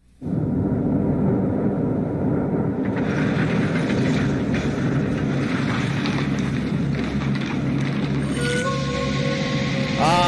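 Opening of a movie-trailer soundtrack: a low, steady rumbling drone that thickens about three seconds in, with held higher tones joining near the end.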